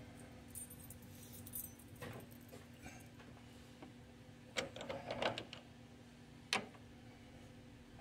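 Light metallic clinks and rattles of lathe tooling being handled and set up in the tool post: a few scattered clicks, a cluster of clinks about four and a half to five and a half seconds in, and one sharp click a second later, over a faint steady hum.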